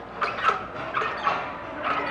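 Several short squeaks and creaks from the low strap-bar rail flexing as a gymnast swings a fast back hip circle around it.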